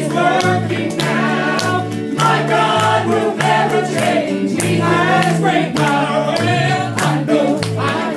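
Gospel vocal group singing in harmony over band backing, with a stepping bass line and a steady drum beat.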